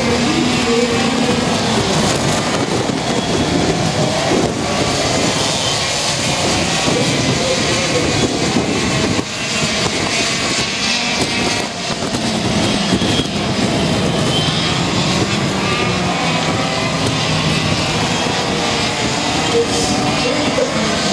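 Several racing kart engines running at speed on a circuit, loud and continuous, their pitch rising and falling as the karts accelerate and lift off through the corners.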